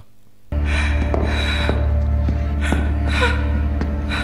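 A low, steady film-score drone starts suddenly about half a second in, with heavy, gasping breaths over it and a few faint footsteps.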